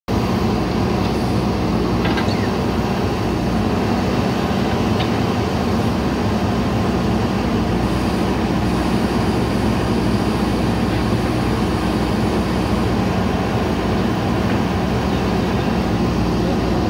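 JCB 3DX backhoe loader's diesel engine running steadily at working revs while the backhoe arm digs soil from a trench. A few faint clicks sound over it.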